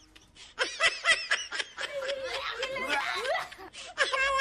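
A person laughing in a run of short, quick laughs that starts about half a second in.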